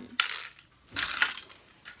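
Small hard objects clinking and clattering in two short bursts, a moment in and again about a second in.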